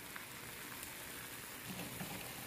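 Liver strips and freshly added onion rings frying in a stainless steel pan in the liver's own juices: a steady, soft sizzle with a few faint crackles.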